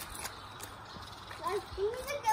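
Quiet background with a few light clicks at the start, then a child's voice rising in pitch near the end.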